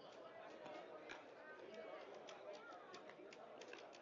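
Faint, distant voices of players calling out on the softball field, with scattered light clicks.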